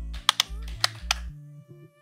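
Computer keyboard typing: a handful of sharp key clicks in the first second and a half, over soft background music with low held notes.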